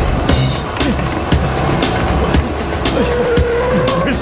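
Cartoon background music over a quick run of sharp footfalls and knocks from people running on treadmills. A steady car-engine hum comes in during the last second as a small racing car arrives.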